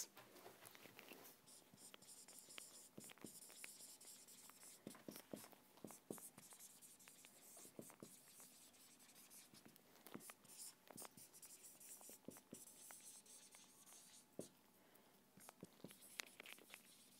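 Faint squeak and scratch of a marker pen writing on a whiteboard, in many short, irregular strokes.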